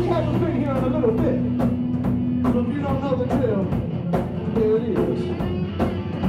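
Rock band playing live: electric guitar and a drum kit keeping a steady beat of regular hits, with a voice singing over them.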